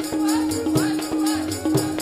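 Sikh kirtan: women singing a hymn with harmonium accompaniment, the harmonium holding a steady reedy note, and tabla keeping a steady beat of about two strokes a second.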